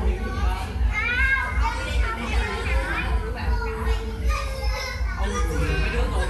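Young children's voices, high-pitched shouting and chattering as they play, over background music with a steady low beat.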